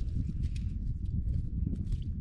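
Wind buffeting the microphone in a low, uneven rumble, with scattered light clicks from handling of the ice-fishing rod.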